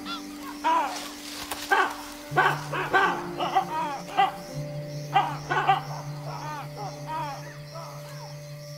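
Baboons giving repeated barking alarm calls at a leopard, several voices overlapping at roughly one or two calls a second and thinning out near the end, over a steady drone of music.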